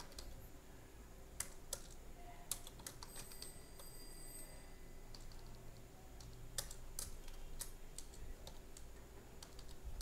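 Faint keystrokes on a computer keyboard, scattered taps in two loose runs: one in the first few seconds and one from the middle to near the end, over a low steady hum.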